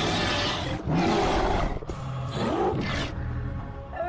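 Three harsh roars from a werewolf-like beast, each about a second long, over a low droning horror music bed.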